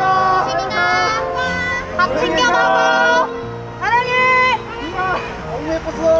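Fans calling and shouting in overlapping high-pitched voices, with one long drawn-out call about four seconds in, over soft piano background music.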